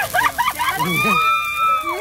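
Laughter, then a long, high-pitched held shriek from a person reacting to a dry Christmas tree flaring up into tall flames.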